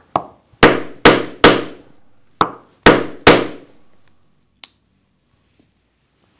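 An oblong slot punch driven through thick cowhide belt leather with a mallet, cutting the slot for the buckle tongue. A light tap comes first, then two runs of three hard blows, each with a short ring.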